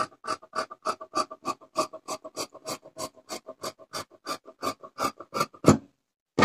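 Tailoring scissors snipping through cotton blouse fabric in quick, even strokes, several a second, with a louder snip near the end.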